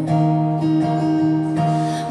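Cutaway acoustic guitar strummed, its chord ringing steadily between light strokes.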